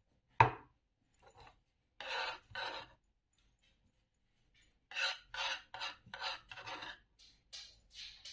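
A glass bowl set down on a wooden cutting board with one sharp knock about half a second in, the loudest sound. Then a serrated kitchen knife scrapes chopped herbs in short rasping strokes: two strokes, then a quick run of about eight.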